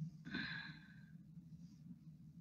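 A short, soft sigh from a person, starting about a quarter of a second in and lasting under a second, over a faint steady low hum.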